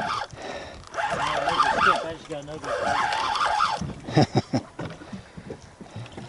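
Indistinct speech that the recogniser did not write down, quieter than the surrounding talk, followed by a few short knocks about four seconds in.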